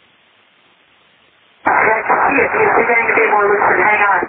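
Recorded aviation radio: a faint open-channel hiss, then about a second and a half in a voice transmission comes through, a short spoken phrase ("Hang on.") over the radio.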